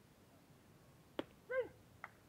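A sharp pop of a pitched ball landing in the catcher's mitt a little past the middle, followed a moment later by one short shouted call.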